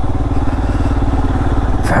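Motorcycle engine running steadily as the bike rides along, heard from the rider's seat, with an even, rapid beat of firing pulses and no change in pitch.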